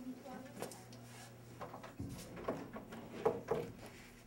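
Classroom door shut behind an entering person, a soft knock about two seconds in, with quiet indistinct voices just after.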